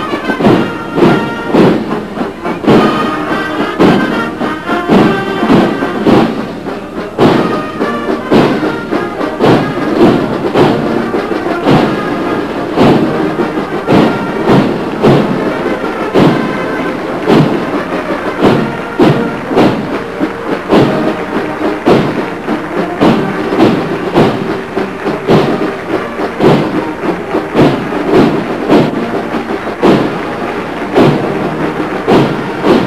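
Military marching band playing a march: brass and woodwind carrying the tune over a steady drum beat at marching pace.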